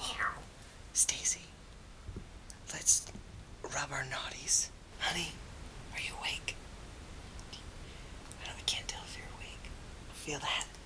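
A man whispering in short, breathy phrases, with pauses between them.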